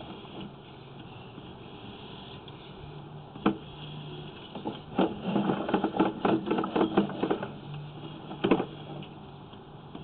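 Sewer inspection camera's push cable being pulled back and reeled in, with scattered clicks and rattles that cluster about halfway through, over a faint steady hum.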